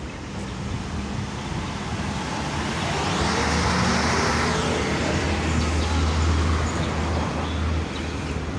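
Road traffic: a motor vehicle passes on the adjacent road, its tyre and engine noise swelling to a peak about four seconds in and then fading, over a steady low engine rumble.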